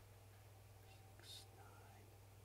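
Near silence: room tone with a faint steady low hum and one brief, soft, breathy hiss a little past halfway.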